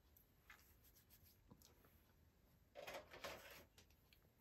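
Near silence: room tone with a few faint small handling sounds and a brief soft rustle about three seconds in.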